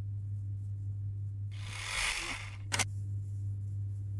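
Hands handling a crocheted acrylic-yarn piece: a soft rustle about halfway, then two quick sharp clicks, over a steady low electrical hum.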